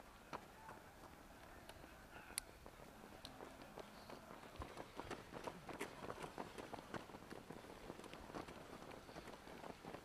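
Footfalls of a group of runners in running shoes on an asphalt track, faint at first and growing into many overlapping quick steps in the second half as the pack comes close.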